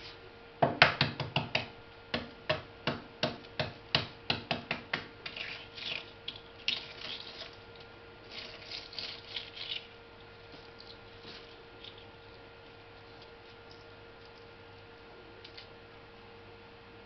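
Hard-boiled egg shell being cracked and peeled by hand: a quick series of sharp taps for about four seconds, loudest at the start, then softer crackling of shell coming away until about ten seconds in.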